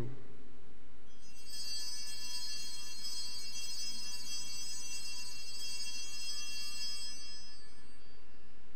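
Altar bells rung at the elevation of the consecrated host: a cluster of high, bright bell tones starts about a second in, rings on steadily and fades out near the end.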